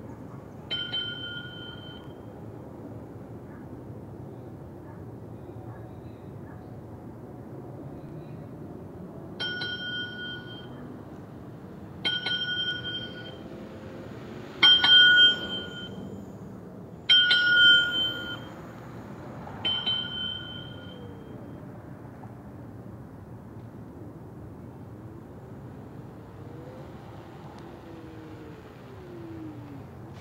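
Bell sound from the horn button of a Beason Bluetooth bicycle speaker mounted on an electric unicycle: six two-tone electronic dings of about a second each, one just after the start and then five more spaced roughly two and a half seconds apart, the loudest near the middle.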